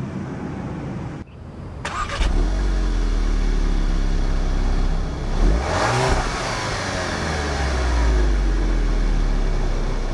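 2012 Volkswagen Beetle Turbo's 2.0-litre turbocharged four-cylinder idling, heard briefly from the cabin and then at its dual exhaust tips. About halfway through it is revved once, rising quickly and falling back to idle.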